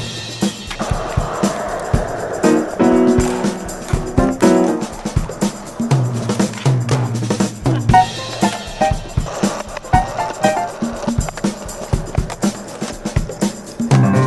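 Soundtrack music with a drum beat, with skateboard sounds mixed in underneath: wheels rolling and the board clacking and hitting now and then.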